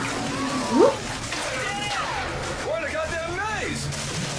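Action-film soundtrack playing: a steady rush of noise under music, with a few indistinct voices.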